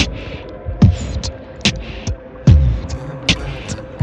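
Beatboxed beat: mouth-made kick thumps and sharp snare-like hits with hissy hi-hat sounds, a strong hit roughly every 0.8 seconds, over a steady hum.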